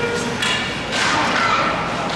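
Ice hockey play close to the boards in an echoing rink: skates scraping the ice and two sharp knocks, about half a second and a second in.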